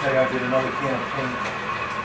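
Indistinct voices of people talking in the room, with a steady background hum.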